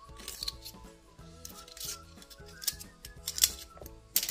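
Paring knife blade scraping and clicking against a Manila clam's shell as it is pried open and the meat cut free: a few sharp scrapes, the loudest near the end, over steady background music.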